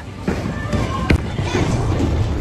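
Bowling alley din: a steady low rumble of bowling balls rolling on the lanes, with one sharp knock about a second in and background chatter.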